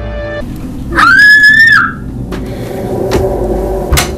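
Eerie film music ends about half a second in. Then a child screams once, a loud, high cry just under a second long that rises, holds and falls away. A few faint knocks follow.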